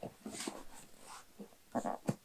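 Cardboard subscription box being lifted and turned over by hand, giving a few short scrapes and bumps, the loudest near the end.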